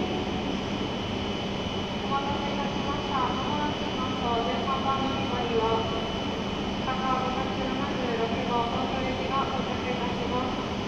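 Steady hum and whir of a W7 series shinkansen train standing at a station platform, with a constant high whine over it. Faint voices of people talking come and go from about two seconds in.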